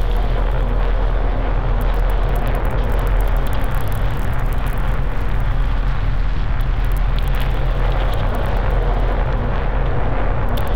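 Loud, steady electronic drone: a constant low hum under a dense, rough wash of noise, unchanging throughout.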